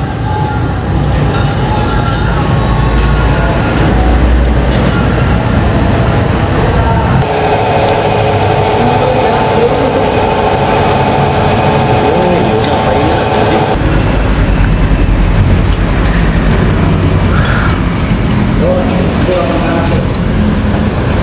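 Steady background noise of motor vehicles running, with voices mixed in. A steady humming tone joins for about six seconds in the middle.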